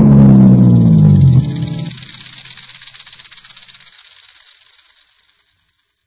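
Overdriven Fender Stratocaster through a Ceriatone OTS amp's overdrive channel playing a final note whose pitch slides down, cut off about a second and a half in. Its reverb and delay tail then dies away to nothing about five seconds in.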